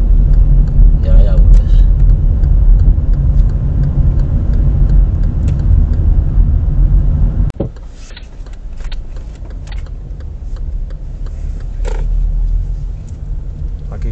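Steady low engine and road rumble inside a moving car. About halfway through it drops suddenly to a quieter drone.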